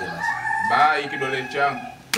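A rooster crowing, one held call that breaks and bends in pitch partway through, with men's voices under it.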